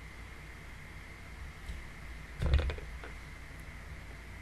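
Steady low hum and hiss from a desk microphone, with a brief cluster of knocks about two and a half seconds in as a plastic tumbler is picked up right next to the mic.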